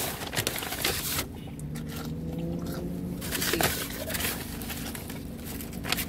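A brown paper fast-food bag rustling and crinkling as a hand reaches in among the fries, with a close run of crackly rustles over the first second and a few shorter ones later.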